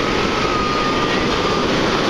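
Ocean surf breaking and washing up the beach, a loud steady rushing noise, with wind buffeting the microphone. A faint, steady high tone sounds for about a second and a half in the middle.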